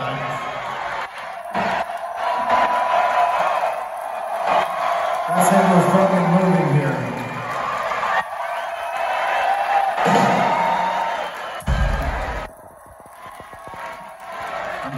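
Loud arena concert between songs: crowd noise with shouting and cheering, and a man's voice through the PA. A heavy low thump comes near the end, after which the noise drops for about a second.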